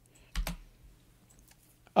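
A single computer keyboard keystroke a little under half a second in, the Enter key running the command, followed by a few faint key ticks.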